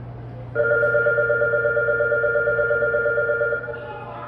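Subway door-closing warning tone: a steady electronic tone with a fast flutter, starting about half a second in, held for about three seconds and cutting off sharply.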